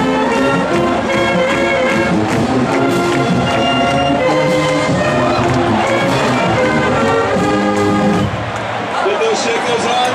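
College marching band playing a tune close by, with sousaphones, baritone horns and flutes among the players. The band stops about eight seconds in, leaving crowd noise.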